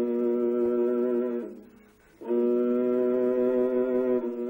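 Kobyz (Kazakh horsehair-strung bowed fiddle) holding one long low note rich in overtones; the note fades away about a second and a half in, and after a short silence the bow comes back in sharply on the same note and holds it.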